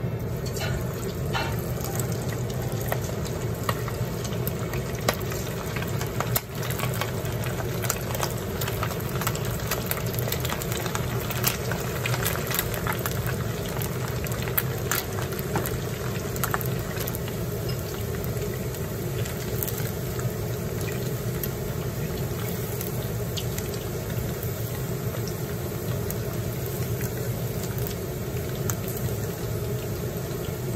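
Pieces of egg-and-potato-starch-coated chicken thigh deep-frying in hot oil: a steady, busy sizzle and bubbling with many small crackles and pops.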